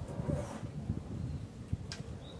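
Low, irregular handling noise from a cloth-covered birdcage being held and shifted, with one sharp click near the end.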